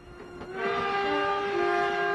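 A steam locomotive whistle sounding one long, sustained chord that swells in about half a second in, with background music notes shifting under it.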